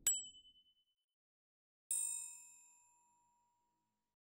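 Title-card sound effect: a short, bright ding right at the start, then a second, fuller ding about two seconds in that rings with several high tones and fades out over about a second.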